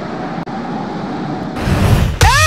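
A steady, noisy rumble of intro sound effects that cuts out for an instant about half a second in and swells into a brighter whoosh near the end.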